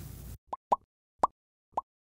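Four short pitched pop sound effects from an animated subscribe end card, the first two close together and the other two about half a second apart, over digital silence. A brief tail of room noise ends just before them.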